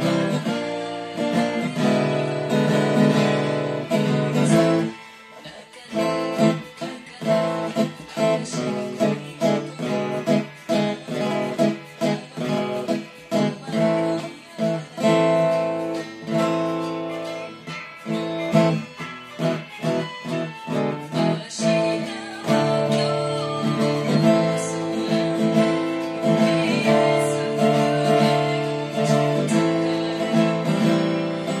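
Solo acoustic guitar with an f-hole body played fingerstyle: full chords at first, a sparser run of single plucked notes from about five seconds in, then full strummed chords again from about twenty-two seconds.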